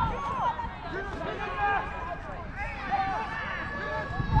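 Distant shouts and calls from several football players across the pitch, overlapping one another throughout, over a steady low rumble.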